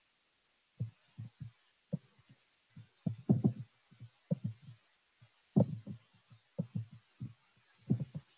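Soft, low thumps and knocks at irregular intervals, a dozen or so with some in quick clusters, from a computer and desk being handled while a document is paged forward, picked up by a video-call microphone.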